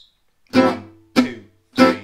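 Gypsy jazz guitar with an oval soundhole playing la pompe rhythm on an Am6 chord: three short, crisp plectrum chord stabs on successive beats at about 100 beats a minute, each released quickly.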